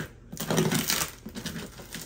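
A knife slitting plastic packing tape on a cardboard box: a burst of scratchy crackling and scraping in the first second, then fainter scrapes.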